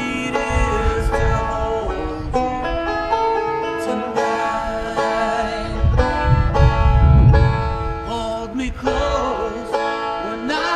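Deering Boston five-string banjo being picked, a steady run of bright plucked notes. A low rumble swells under it about six seconds in and fades after a second or so.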